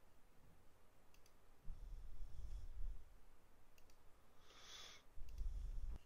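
Faint computer mouse clicks, two quick pairs a few seconds apart, in a quiet room. A short soft hiss comes just before the end.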